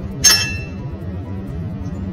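An ice cube dropped into an empty drinking glass: one sharp clink with a short ring, about a quarter second in, over steady background music.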